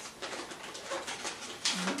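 Crinkling and rustling of a potato-chip bag being rummaged for and pulled out of a fabric project bag, a fast run of small crackles.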